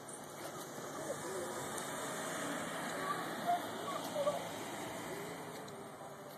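Faint, indistinct voices talking over a steady rushing background noise.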